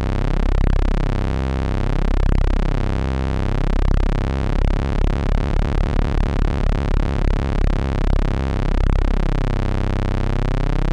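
GForce OB-E software synthesizer, an emulation of the Oberheim 8-Voice, holding one sustained note on two sawtooth oscillators with the second being detuned. The beating between them starts slow, quickens through the middle as the detune widens, then slows again near the end as the detune is brought back toward zero.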